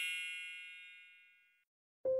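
A high, bell-like chime rings out and fades away, dying out about a second and a half in.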